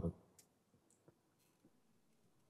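A man's voice at a microphone breaks off right at the start. A quiet pause follows, with three faint, short clicks spread over it.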